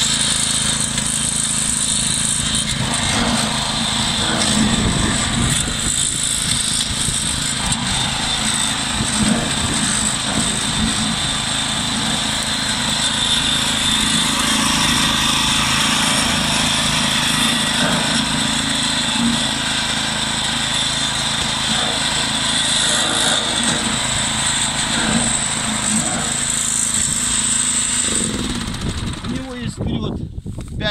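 Small single-cylinder petrol engine of a tracked branch chipper's drive platform running steadily, quietening a little near the end; the chipper's cutting-unit engine is not yet running.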